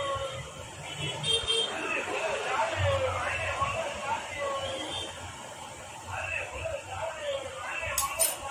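A person's voice talking.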